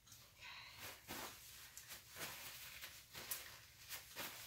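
Near silence: room tone with a few faint, soft rustles and clicks.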